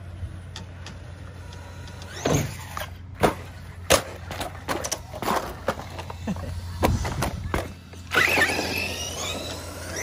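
Traxxas Revo 2.0 RC monster truck running on pavement, with several sharp knocks and clatter from the truck. About eight seconds in, its motor whines up in pitch as it accelerates away.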